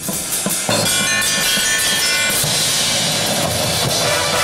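Drum and bugle corps playing: drum strikes, then about 0.7 s in the full corps comes in, with the brass horn line's G bugles holding loud chords over the drums and cymbals.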